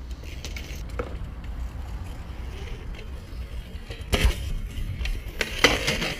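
BMX bike rolling on concrete under a steady low rumble, then a crash: bike and rider hit the concrete with a sharp clatter about four seconds in and more clattering just before the end.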